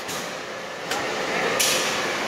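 A single clunk about a second in as the freezer's rotary disconnect switch is turned to off, over a steady background hum, with a short hiss near the end.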